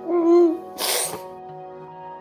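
A woman crying: a short, high, wavering sob, then a sharp sniffling breath about a second in, over soft sustained background music.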